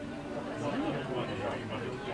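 Indistinct overlapping conversation of several café customers, a steady background chatter with no single voice standing out.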